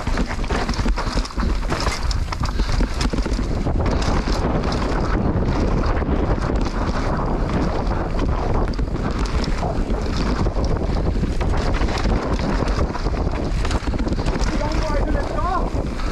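Wind buffeting the microphone over the steady rumble, crunch and rattle of a mountain bike running fast down a rough dirt and rock trail, with many small knocks from the bike and tyres over the bumps.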